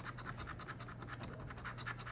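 A lottery scratch-off ticket having its coating scratched off in rapid, short strokes.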